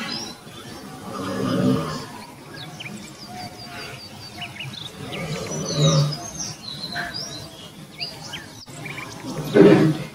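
Wild birds chirping and calling with short, high, quick notes throughout. Three louder, low, rough animal calls swell up about a second and a half in, around six seconds in, and just before the end.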